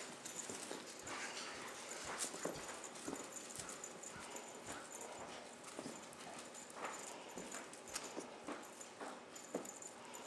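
Legend Leopard kittens scampering and pouncing on carpet: irregular soft thumps and patters of paws landing as they chase a toy.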